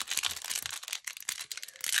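Foil wrapper of a Bowman University football trading card pack being torn open and crinkled by hand: a dense run of small crackles and tearing sounds.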